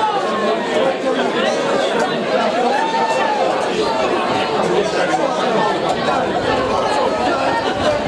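Crowd of spectators talking at once, a steady babble of many overlapping voices.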